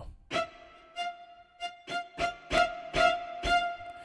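Sampled cello section from the VSCO 2 Community Edition virtual instrument playing spiccato: the same high note repeated in short, detached strokes, about two a second. Each stroke sounds alike, probably just a single sample repeated with no round-robin variation.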